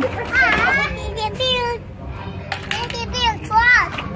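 Young children's high-pitched voices, calling and chattering without clear words. The sound comes in two stretches with a short pause about two seconds in.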